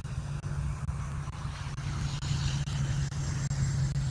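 A truck passing on a road: a steady low engine hum with tyre hiss that swells about halfway through.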